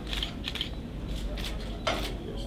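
Rapid mechanical clicking, several short clicks a second, with one sharper, louder click near the end, over a steady low hum.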